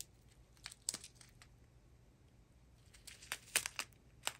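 Small clear plastic zip-lock bags of resin diamond-painting drills crinkling faintly as they are handled, in a few short scattered crackles with a closer run of them near the end.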